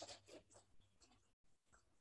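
Near silence, with faint scratchy rustles that fade after the first half second and drop out briefly about a second and a half in.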